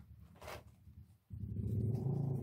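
A brief rustle of a small cardboard product box being handled, about half a second in. About a second and a half in, a steady low hum with several tones starts suddenly and is the loudest sound.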